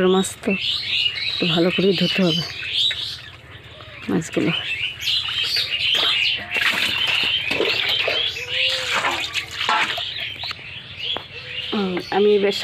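Small birds chirping over and over, with a person's voice heard briefly about two seconds in.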